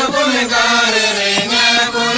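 Music: a chanted song with long, held vocal notes that slide gently in pitch.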